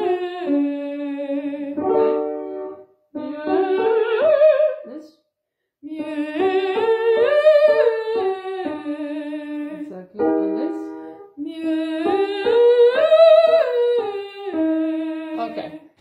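A woman singing a vocalise: several sung phrases that climb and fall back in steps, with short instrument chords between some of them. The tone is rounded but lacks squillo, the bit of metal or ring in the timbre that gives the voice projection.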